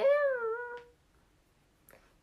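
A young woman's drawn-out vocal exclamation, like a surprised "eeh", rising and then falling in pitch and lasting under a second.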